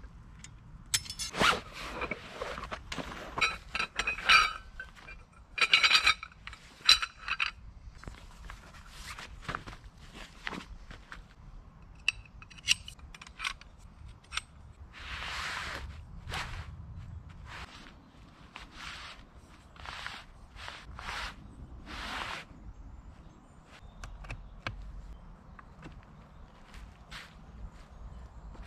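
Metal poles of a folding camp cot clinking and knocking together, some strikes ringing briefly, as they are pulled from their bag and assembled, with rustling and scraping of the cot's fabric and stuff sack.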